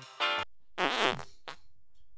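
The last notes of a short musical jingle, then a brief raspy, rapidly pulsing sound effect about a second in, followed by a faint click.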